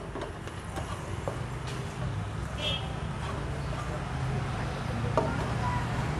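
Chili and shallot spice paste sizzling in a non-stick frying pan as a spatula stirs it, with the steady low hum of a vehicle engine underneath that grows louder from about a second and a half in.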